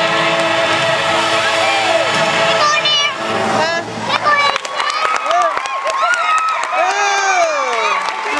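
Arena show music over the public-address system with crowd noise, giving way about halfway through to a voice speaking with wide swoops in pitch over scattered cheering.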